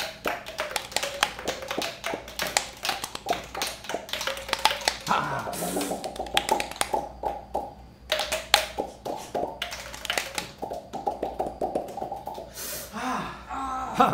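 Percussion quartet playing mouth and cheek percussion: quick hollow pops from palms tapping the cheeks and lips over an open mouth, their pitch shifting as the mouth changes shape, in a busy interlocking rhythm.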